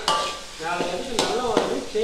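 A metal ladle stirring and scraping fried pieces around a kadai, with the food sizzling and a few sharp clinks of metal on the pan.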